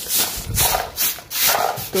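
Stiff stick hand broom sweeping across a concrete floor in repeated scratchy strokes, about two a second.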